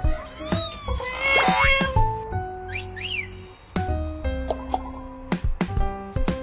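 A cat meowing, with two drawn-out meows in the first two seconds and a short high call about three seconds in, over background music of short plucked notes.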